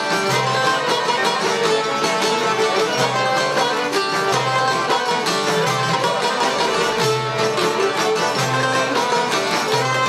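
Albanian folk ensemble playing: plucked çifteli and long-necked lute with violin and accordion, and a frame drum beating about once a second.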